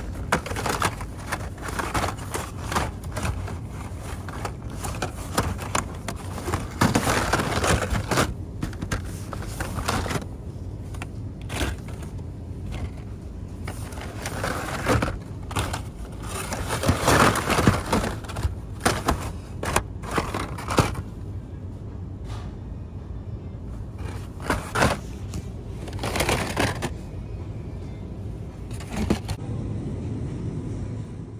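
Hot Wheels cardboard-and-plastic blister packs clattering and scraping against each other as a hand rummages through a bin of them, in irregular rustles and clicks with louder flurries now and then. A steady low hum runs underneath.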